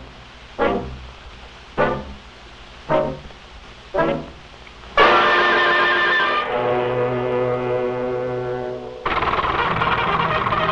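Orchestral cartoon score: four short accented brass notes about a second apart, then loud held brass chords from about halfway, changing to a new chord near the end.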